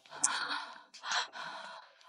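A woman's breathy, distressed sighs, two swells of exhaled breath without words.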